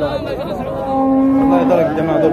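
A calf mooing once, a single held call of under a second about midway, with men's voices around it.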